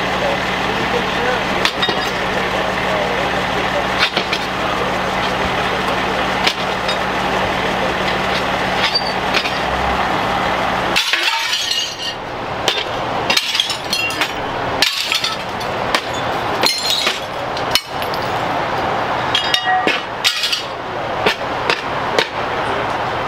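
Broken glass clinking and cracking as a firefighter's long-handled tool knocks and pries shards and splintered wood out of a crash-damaged storefront window. The sharp knocks come irregularly and are densest in the second half. Voices and a steady engine hum fill the first half and cut off abruptly about halfway through.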